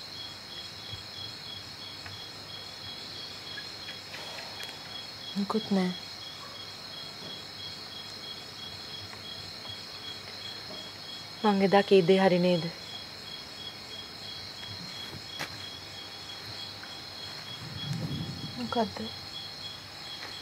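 Crickets chirping steadily at night: a high, continuous trill with a fast, evenly pulsing chirp just beneath it. Short bursts of speech break in twice.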